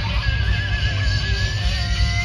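Live rock band playing at full volume, with a heavy low end from bass and drums. Over it a high lead note is held with a wavering vibrato and slowly bent upward.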